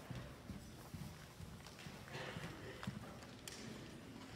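Faint, scattered knocks and clinks, about one a second, of communion vessels and other items being set down and moved on a wooden altar.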